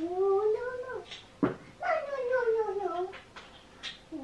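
A house cat meowing in two long, drawn-out calls, the first rising in pitch and the second falling, with a short tap between them about a second and a half in.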